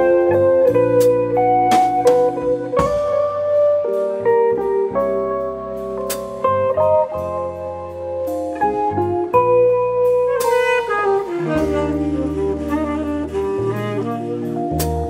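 A live jazz quintet playing an instrumental number: saxophone, hollow-body electric guitar, electric stage piano, electric bass guitar and drum kit, with steady cymbal strokes keeping time.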